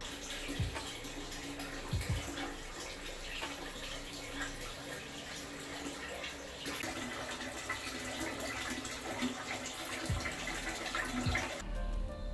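A steady, even hiss like running water, with a few soft low thumps.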